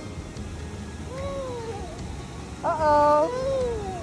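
A cat meowing: three drawn-out meows that rise and fall in pitch, the loudest about three seconds in.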